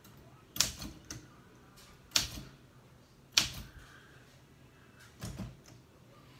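1964 Olympia De Luxe manual typewriter, keys struck slowly one at a time with one hand. About five sharp type-bar clacks come at uneven gaps of roughly a second, with a softer click or two after some strikes.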